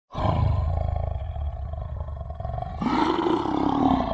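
Lion roar sound effect: a low, rough growl, then a louder, pitched roar about three seconds in.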